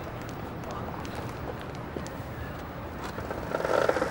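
Low, steady street background with a few faint clicks, then near the end a short rattle as an old bicycle's pedal crank is spun by hand to work the slipped chain back onto the sprocket.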